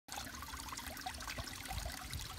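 Water trickling steadily from a small stone fountain, with scattered drips.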